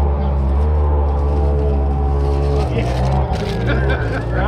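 Polaris RZR side-by-side's engine running at a steady pitch, which changes about two-thirds of the way through.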